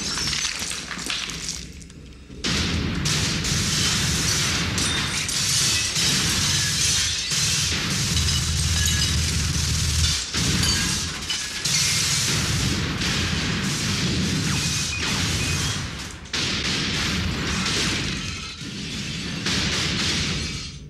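Film gunfight sound effects: a long barrage of gunfire with glass and crockery shattering almost without pause. It breaks off briefly about two seconds in and again near the end.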